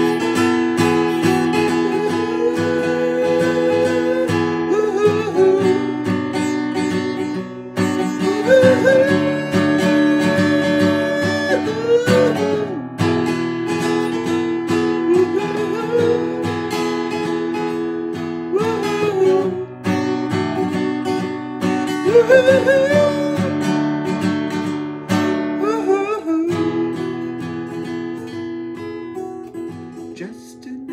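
Acoustic guitar strummed under a man's wordless singing: several long held notes that slide up into pitch, with gaps between them, the music fading near the end.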